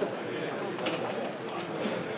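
Many people talking at once: a steady murmur of overlapping chatter from a seated audience, with a single sharp click just under a second in.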